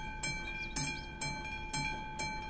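Railway level-crossing warning bell ringing in a steady rhythm, about two strikes a second, each strike ringing on into the next. It is the crossing's alarm that a train is approaching.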